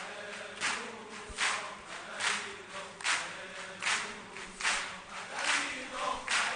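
A crowd clapping together in a steady beat, a little more than once a second, with faint chanting voices underneath.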